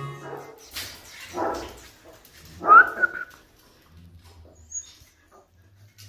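Siberian husky puppy giving a few short cries, the loudest about three seconds in with a quick rise in pitch, followed by fainter sounds.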